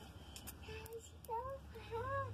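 A cat meowing softly: a few short mews that rise and fall in pitch, the clearest about one and a half seconds in.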